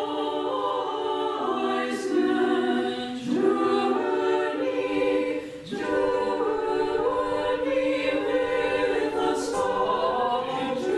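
Small choir of nuns singing Orthodox liturgical chant a cappella: long held notes with brief breaks for breath about three seconds and nearly six seconds in.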